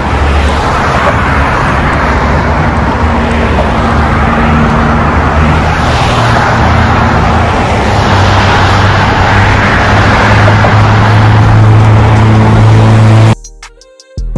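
Loud, steady road-traffic noise from cars crossing the bridge, with a low hum that grows stronger in the second half. It cuts off abruptly just before the end, where music starts.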